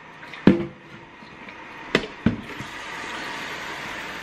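Kitchen handling sounds: a plastic water pitcher and other hard objects knocking as they are moved and set down. There is a loud knock about half a second in, then two sharper clicks around the two-second mark, over a faint steady hiss.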